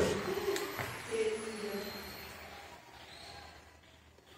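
Faint distant voices over room noise, with a couple of light clicks early on, dying away toward quiet by the end.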